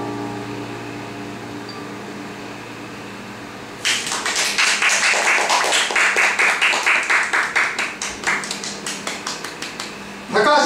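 The last held keyboard chord of the piece fades away, then a small audience starts applauding about four seconds in, the clapping thinning out toward the end.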